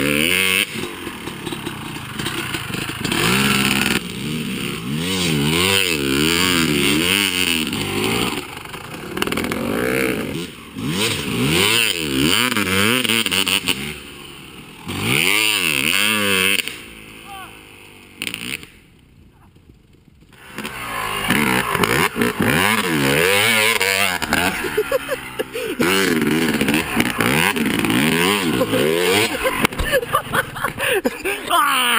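Dirt bike engines revving up and down again and again as the bikes accelerate and brake through turns. The sound drops low for a few seconds past the middle, then comes back close and loud toward the end.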